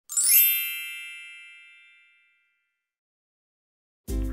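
A bright chime sound effect: a quick upward run of bell-like notes that rings on and fades away over about two seconds.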